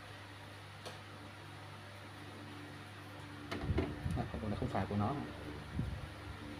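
A quiet, steady low hum, with a single small click about a second in. From about three and a half seconds, a short run of irregular knocks and rustles as things are picked up and handled.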